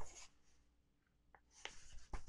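Pages of a picture book being turned by hand: a short paper rustle at the start and more rustling near the end, with near silence in between.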